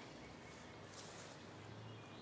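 Near silence: faint outdoor background with one soft rustle about a second in, and a faint low hum coming in near the end.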